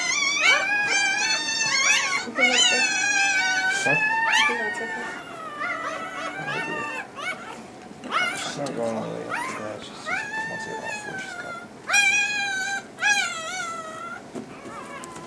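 Young Rottweiler puppy crying in long, high-pitched, wavering squeals, one after another, while held with a gas anesthesia mask over its face. The cries weaken after the first few seconds, with two louder ones near the end.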